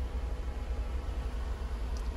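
Small Smart car petrol engine idling, heard from inside the cabin as a steady low hum with a faint hiss over it.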